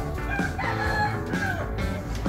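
A rooster crows once, lasting about a second, over background music with a plucked-string instrument.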